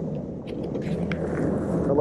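Bass boat's outboard motor running low and steady under wind and water noise, with a few short clicks about halfway through.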